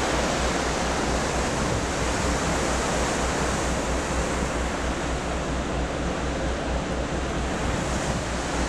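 Steady rush of wind and churning sea water from a cruise ship's wake, with a low fluttering rumble underneath.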